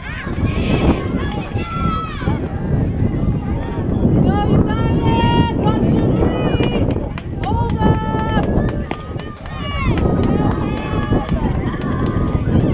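High-pitched young voices calling and cheering at a youth softball game, with several long drawn-out calls, over a steady low wind rumble on the microphone.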